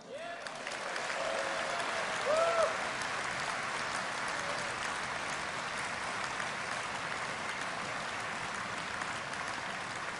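Large conference-hall audience applauding steadily after a line from the speech. One voice calls out briefly about two seconds in.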